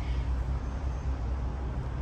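A steady low rumble with nothing sudden on top of it.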